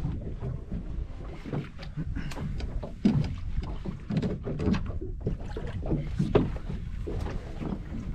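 Steady low rumble of wind and water around a small drifting fishing boat. Scattered knocks and clatter come from gear being handled on the deck, the sharpest about three seconds in and again a little after six.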